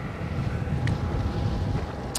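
Wind buffeting the microphone of a moving rider: an uneven low rumble, with a faint steady hum underneath.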